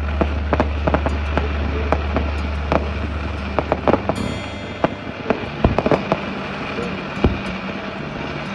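Fireworks firing in quick, irregular succession: sharp pops and bangs of small shells and comets going up. A steady low hum underneath cuts off about halfway through.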